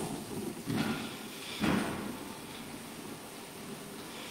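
Quiet room noise in a church sanctuary, broken by two short noises from people in the congregation, about one and two seconds in.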